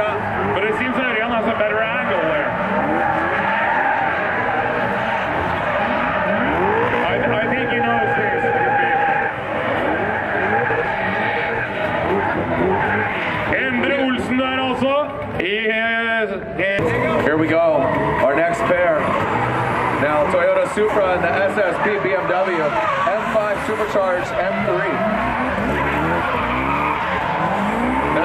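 Drift cars, a BMW 3 Series and a Toyota Supra, sliding in tandem: engines revving up and down at high rpm over tyres squealing and skidding.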